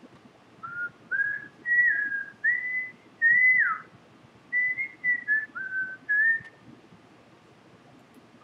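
A person whistling a short tune in clear single notes, in two phrases: the first climbs and ends on a note that slides down, and the second steps down and back up.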